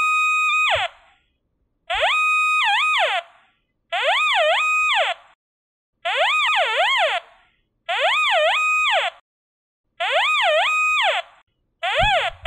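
Nokta Invenio metal detector's electronic target tone, sounding once each time the search coil sweeps across the buried rebar. Six tones about two seconds apart, each about a second long, holding steady and then dipping and rising in pitch.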